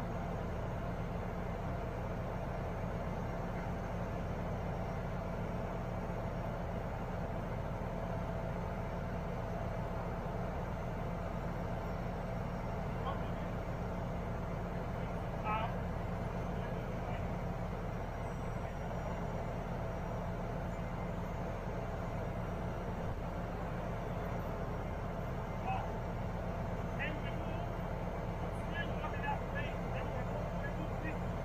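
Diesel engine of a Liebherr LTM1230-5.1 mobile crane running steadily with a low hum, with a few brief clanks and faint voices in the second half.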